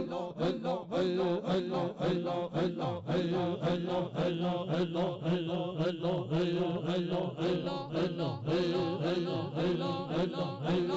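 Group of men chanting Sufi zikr, repeating the name of Allah in short phrases at a quick, even rhythm over a steady held low note. The chant is amplified through hand microphones and a PA loudspeaker.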